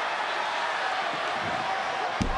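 Large arena crowd cheering in a steady wash of noise while a submission hold is applied.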